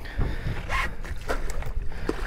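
Water splashing as a landing net is dipped and an amberjack is scooped into it at the surface, a few short splashes over a steady low rumble of wind and waves.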